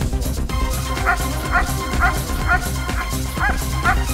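German shepherd barking at the helper in an IPO guard-and-bark, regular barks about two a second starting about a second in, over background music with a steady beat.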